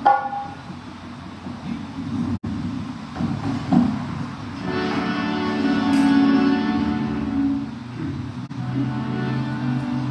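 Harmonium playing sustained chords, coming in louder about halfway through.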